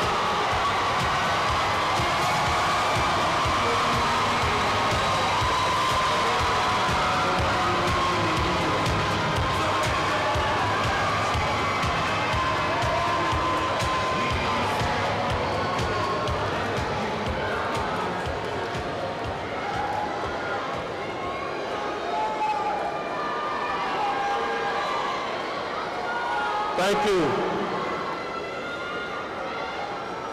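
Large crowd cheering and calling out, many voices at once, the noise slowly dying down over the last third.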